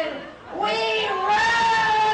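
A rock singer's high wailing voice, unaccompanied, holding long notes that slide slowly in pitch, with a short break just before half a second in.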